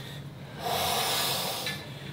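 A man's long, forceful exhale, starting about half a second in and lasting just over a second.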